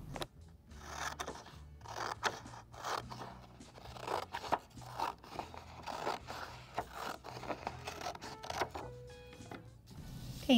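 Scissors cutting through a sheet of paper along a zigzag line, a series of short snips about one or two a second.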